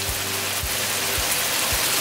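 Pork tocino in its sauce sizzling and bubbling in a nonstick wok over medium heat, a steady frying hiss. Background music with a soft beat about twice a second plays under it.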